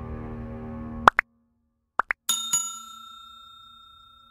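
Background music cuts off about a second in, followed by the pop-and-chime sound effects of a like-and-subscribe animation: two quick pops, two more about a second later, then a bell-like ding that rings and slowly fades.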